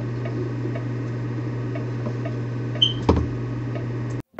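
Steady low drone of a tour boat's engine heard from on board, with a brief high chirp and a single knock about three seconds in.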